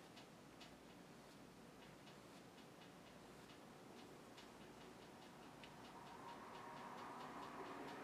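Near silence with faint light ticks, about two or three a second, of a paintbrush dabbing short strokes of acrylic onto a stretched canvas.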